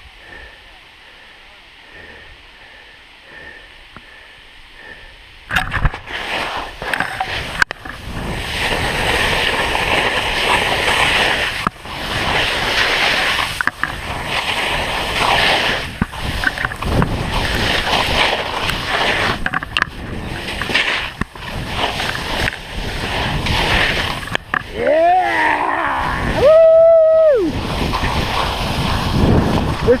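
Skis scraping and carving down a steep slope of soft spring snow, with wind rushing over the helmet-camera microphone, starting about five seconds in after a quiet wait. Near the end a skier lets out a long, high whoop.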